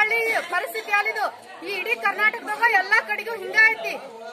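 Women's voices talking over one another in a crowd: speech and chatter, with no other sound standing out.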